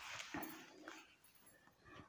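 Faint rubbing of a cloth duster wiped across a whiteboard, dying away about half a second in, then near silence.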